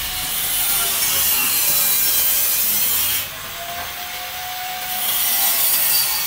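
Corded angle grinder with a thin cut-off disc cutting through stainless steel square tube, a harsh high hiss of disc on metal. About three seconds in the cutting noise drops and the motor's whine shows through, then the disc bites again near the end.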